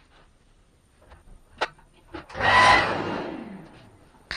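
A click, then a short loud burst from a small power tool in a workshop, whose whir falls in pitch and dies away over about a second.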